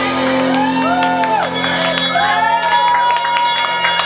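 A live band holding a final chord as the song ends, with audience members whooping and cheering over it.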